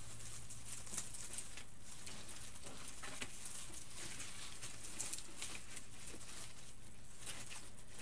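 Light rustling and small crackles of artificial pine sprigs and plastic berry picks being handled and fluffed by hand, scattered throughout, over a steady low hum.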